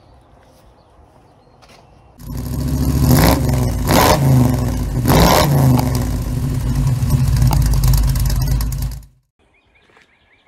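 Faint outdoor background, then about two seconds in a loud engine revving: it rises and falls in pitch several times over a steady running note. It cuts off suddenly about nine seconds in.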